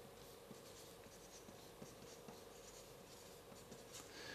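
Faint scratching and squeaking of a felt-tip marker writing on flipchart paper, over a low steady hum.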